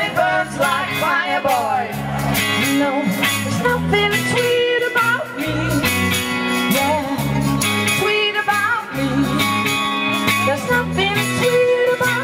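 A live pop-rock band playing: electric guitar, bass guitar and a drum kit keep a steady beat, with voices singing over it.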